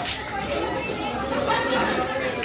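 Indistinct chatter of many people talking at once in a room, no single voice standing out.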